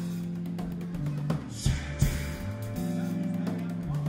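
Live rock band playing: drum kit, electric bass, guitar and keyboards, with regular drum and cymbal hits over held chords.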